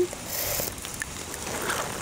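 Light rain falling outdoors: a steady soft hiss with scattered faint drip ticks, and a brief higher rustle about half a second in.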